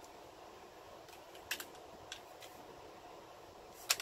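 Light plastic clicks of a CD jewel case being handled and closed: a few scattered clicks, with a sharper one near the end, over a low steady room hum.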